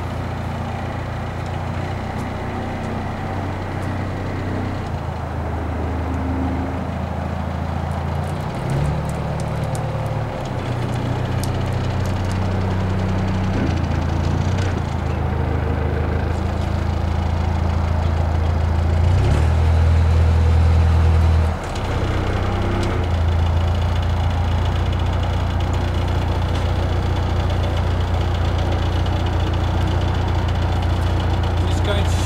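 Narrowboat diesel engine running at low revs, a steady low hum whose note shifts a few times. It swells louder for a couple of seconds past the middle, then drops back.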